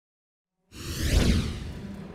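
A whoosh sound effect from a TV programme's animated opening ident: after a moment of silence it swells with a deep rumble, peaks just over a second in and fades, as low held music notes begin near the end.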